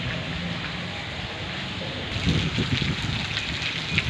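Steady rain falling on wet ground and standing water, with a faint low hum under it at first. About halfway through, the rain becomes louder and brighter.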